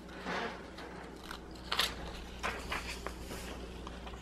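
Scissors cutting through a notebook page in a handful of short snips at uneven intervals.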